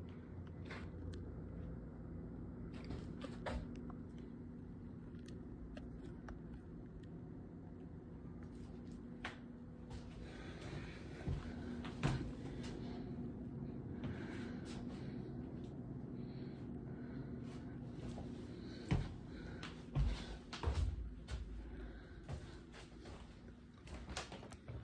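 A steady low hum fills the room, with scattered light clicks and knocks from footsteps and handling. Several louder knocks in the last few seconds come from a wooden door being opened.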